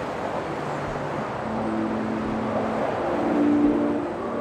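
Steady hum of distant city traffic, with soft sustained music notes coming in about halfway through and growing louder toward the end.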